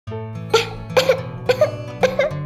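Three short coughs about half a second apart, over background music.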